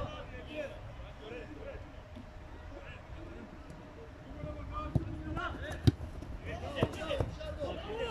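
Players' voices calling across a football pitch, with several sharp thuds of a football being kicked on artificial turf in the second half.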